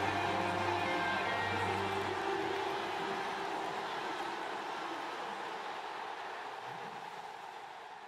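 The soundtrack fades out. A held low note ends about two seconds in, and a steady noisy wash behind it fades away slowly.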